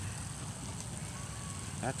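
Low, steady wind rumble on a handheld phone's microphone during a walk, with a faint steady high hiss.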